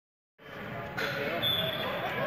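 Overlapping voices of children and adults chattering in a large indoor sports dome, starting a moment in and growing louder about a second in. A thin high steady tone sounds through the last half second.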